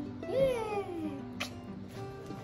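One drawn-out call about a quarter second in, rising briefly and then sliding down in pitch over about a second, over steady background music; a short click follows near the end.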